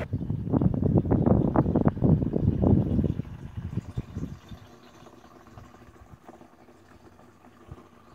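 Irregular low rumbling and rustling noise, loud for about the first four seconds, then dying away to faint background noise.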